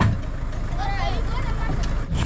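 Low, steady rumble of a vehicle driving slowly, with voices calling in the background.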